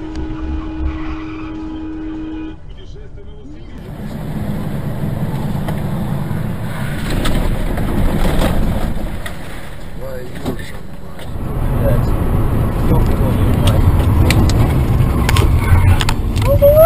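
Dashcam audio from inside a moving car: engine and road noise. A steady pitched tone is held for the first two seconds or so, and several sharp knocks come later.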